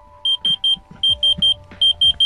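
Diamond Selector II thermal diamond tester beeping in quick triplets: three short, high beeps repeated about every three-quarters of a second while its probe tip rests lightly on a diamond. This is the tester's reading for diamond.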